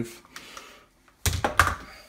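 Handheld press-fitting gun and battery being picked up and set down on a granite worktop: a short run of hard plastic knocks and clatter about a second and a quarter in.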